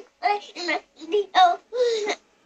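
A young child's high voice in a sing-song phrase of several short syllables with brief gaps between them.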